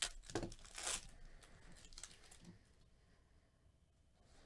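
Foil wrapper of a 2020 Topps Series 2 baseball card pack being torn open and crinkled: a few short rips within the first second, then faint rustling that dies away.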